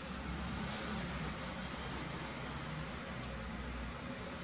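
Steady low rumble and hiss of background noise, even throughout with no distinct events.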